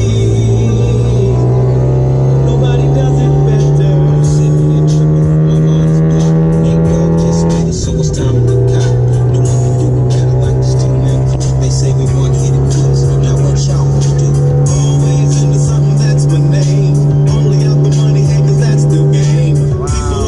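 Background music with a steady beat laid over the E46 BMW M3's inline-six engine. The revs climb steadily in gear, drop with an upshift about eight seconds in, climb again and drop with another shift near the end.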